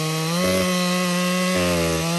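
A large two-stroke chainsaw runs at high revs under load as its chain cuts through a thick tree trunk. It holds a steady engine note that rises slightly about half a second in and dips briefly near the end.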